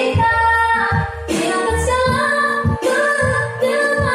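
A young girl's solo voice singing a slow pop ballad in Indonesian through a microphone, holding long notes, over a backing track with low chords underneath.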